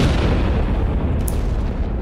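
A single loud explosion, the blast of a mortar firing, hits at the very start and its noise dies away slowly over the two seconds, over a low steady music drone.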